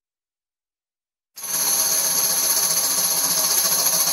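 Silence, then about a second and a half in a steady, high metallic rattling starts suddenly and runs on evenly. It is the opening sound of a children's remix track, before the beat comes in.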